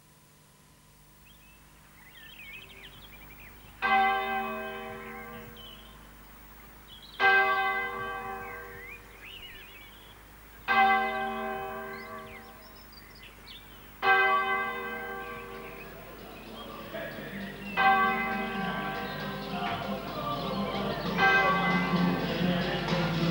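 A single church bell tolling slowly, six strikes about three and a half seconds apart, each ringing out and fading before the next. Faint high chirps sound between the early strikes, and a fuller sound builds under the last few strikes.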